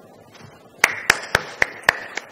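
A person clapping: sharp, evenly spaced claps, about four a second, starting nearly a second in.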